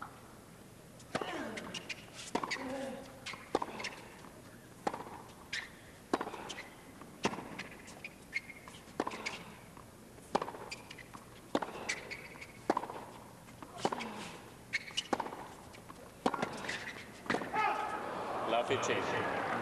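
Tennis ball struck back and forth in a long baseline rally on a hard court: a sharp racket-on-ball hit about every second and a quarter, with fainter ball bounces between.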